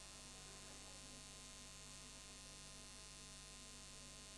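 Near silence holding only a steady low electrical hum with faint hiss, mains hum picked up in the microphone and recording chain.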